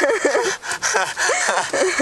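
Several people laughing inside a car, their voices rising and falling in short bursts of giggling.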